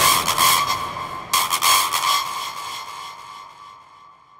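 Dark industrial techno track in a breakdown: the drums drop out and a ringing synth tone sounds twice, about a second and a quarter apart, then slowly fades away.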